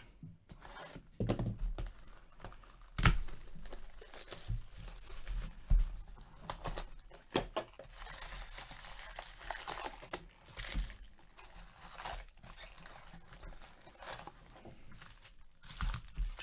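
Plastic shrink-wrap crinkling and tearing as a sealed cardboard trading-card box is unwrapped and opened, then foil card packs rustling as they are lifted out and stacked. Scattered sharp taps and knocks run through it, the loudest about three seconds in.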